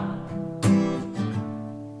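Acoustic guitar: a chord strummed once about half a second in, then left ringing and fading.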